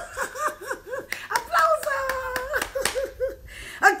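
A woman laughing heartily in quick repeated bursts, with a longer drawn-out laugh in the middle. A few sharp hand claps come about a second in.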